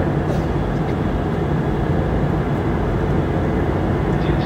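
Steady cabin noise of a Boeing 717 in flight, heard from a window seat: the even drone of airflow and the aircraft's two rear-mounted Rolls-Royce BR715 turbofan engines, with a low rumble underneath.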